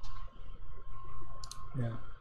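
A few sharp clicks at a computer while searching for a file: one right at the start and a quick pair about a second and a half in, over a low steady hum.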